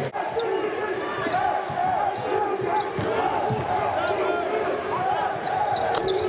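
Live basketball game sound on a hardwood court: sneakers squeaking in short bursts, the ball bouncing with a few thuds, and players calling out, heard clearly in a near-empty arena.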